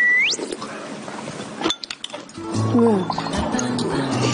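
A short rising whistle-like sound effect at the very start, a few clinks of spoons against ceramic bowls, then background music with a melody coming in about two and a half seconds in.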